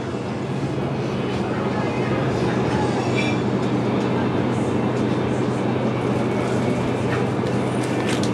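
A steady low mechanical hum under a constant rushing noise, with faint voices in the background.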